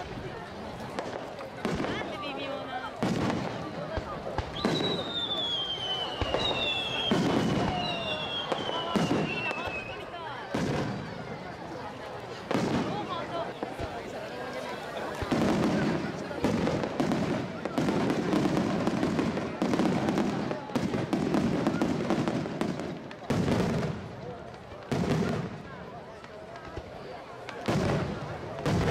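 Aerial fireworks shells bursting one after another, each with a sudden report. A few seconds in come three whistles that fall in pitch.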